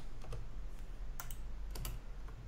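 Keystrokes on a computer keyboard: a single key about a second in, then a quick run of three or four near the end.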